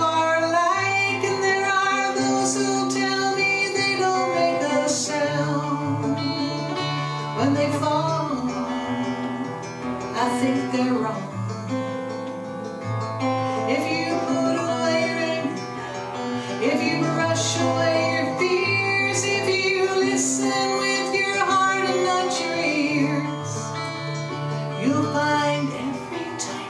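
Plugged-in acoustic guitar strummed and picked through a PA, with a woman singing a slow folk song over it.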